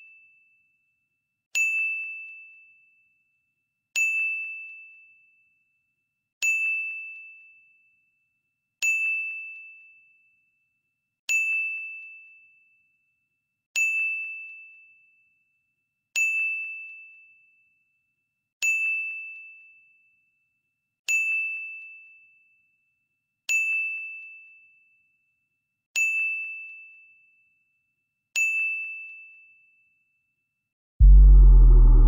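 Countdown-timer chime sound effect: a single high ding about every two and a half seconds, twelve in all, each ringing out and fading before the next, one for each step of the countdown.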